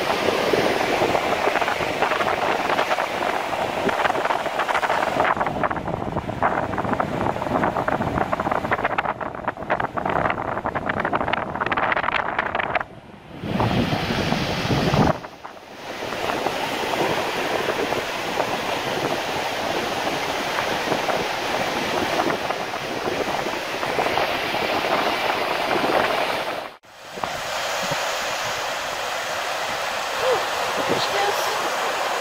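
Ocean surf breaking and washing over black lava rocks, with wind rushing on the microphone. The sound briefly drops out three times.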